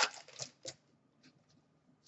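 Hockey trading cards being flipped through by hand: a few short, soft flicks and rustles in the first second, then two fainter ones.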